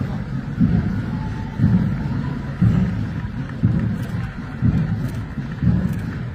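Marching-band bass drum beating a steady slow-march time, deep thumps about once a second, over a low outdoor rumble.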